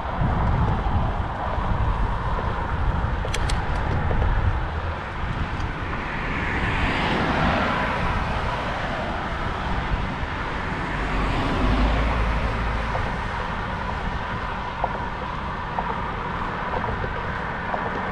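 Wind rumbling on a bike-mounted action camera while riding, as two passing vehicles' road noise swells and fades, once a little before the middle and again past it.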